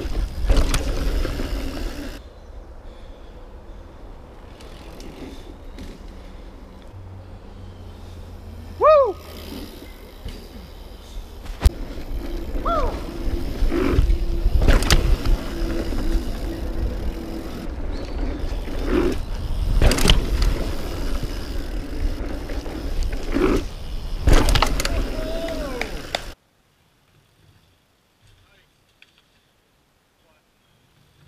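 Mountain bike ridden fast down a dirt trail, heard from a camera on the rider: rushing tyre and wind noise with knocks and rattles of the bike over bumps, and a few short yelps that rise and fall. A few seconds before the end the sound drops suddenly to near silence.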